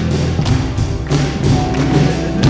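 Live worship band playing a song: acoustic guitar, electric bass and keyboard over a steady percussive beat.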